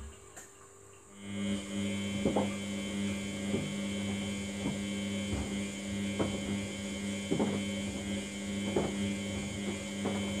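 Samsung front-loading washing machine turning its drum during the wash: a steady motor hum starts about a second in. Soft thuds of the wet laundry tumbling recur about once a second.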